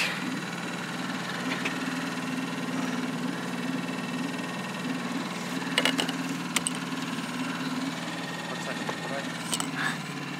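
Outboard motor idling steadily, with a few short sharp clicks and knocks about six seconds in and near the end.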